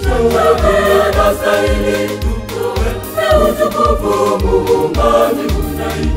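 A gospel choir singing a song over a backing track, with a steady low beat about twice a second.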